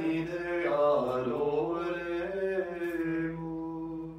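Chanting of the Divine Office at Lauds: voices hold a steady reciting tone, bend through a short melodic turn about a second in, then return to the reciting note, which fades near the end.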